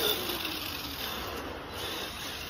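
Traxxas Stampede RC truck's electric motor whining, its pitch falling and fading within the first second as the truck drives off, then a steady hiss.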